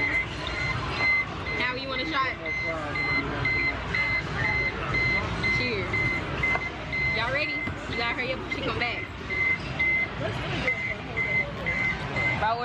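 A high electronic beep repeating at an even pace, roughly twice a second, over the chatter of people talking in a busy room.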